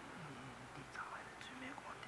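Faint, low-voiced whispering between two men, picked up off-axis by a podium microphone.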